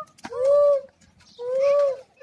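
Children's voices giving two long hooting calls, each rising and falling in pitch, in imitation of monkeys.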